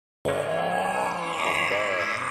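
Opening of a hip-hop track in 8D audio, starting after a moment of silence: a man's wordless vocal ad-lib over the intro of the beat.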